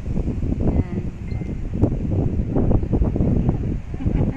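Wind buffeting the phone's microphone: an uneven, gusty low rumble.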